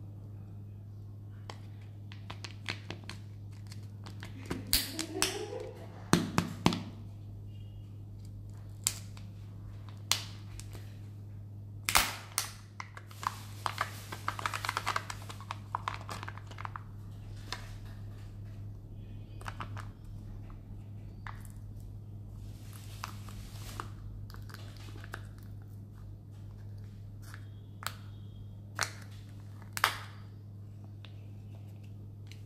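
Plastic wrapping of egg-shaped chocolate candies being handled and torn open: crinkling and tearing of the thin plastic wrapper with scattered sharp clicks and snaps of the plastic egg halves, and a stretch of steady crinkling in the middle. A low steady hum runs underneath.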